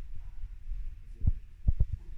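Four dull low thumps, one a little past a second in and three in quick succession near the end, over a steady low hum.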